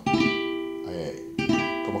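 Classical guitar: the first and second strings plucked together, the first stopped at the third fret and the second at the fifth, giving a G over an E. The pair is struck twice, about a second and a half apart, and left to ring.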